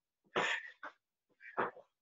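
Short, forceful breaths of a martial artist throwing alternating high rising heel kicks, with a breathy burst about a second apart for each kick and a brief catch of breath between them.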